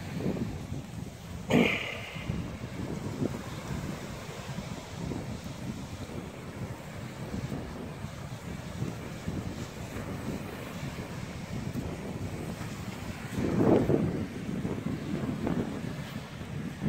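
Wind buffeting the microphone over the steady wash of small waves on the shore, with a brief knock about a second and a half in and a louder rush of noise near the end.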